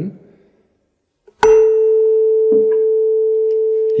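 A tuning fork tuned to concert A (440 Hz) on a wooden resonance box is struck with a mallet about a second and a half in. It gives a short bright clang of high overtones, then a loud, steady pure tone that holds. Its twin fork, tuned to the same pitch, is being set vibrating in sympathetic resonance.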